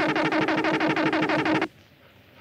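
Electronic synthesizer signal effect: a steady low tone under rapid, evenly repeating falling chirps, cutting off abruptly shortly before the end. It is the strange signal from space.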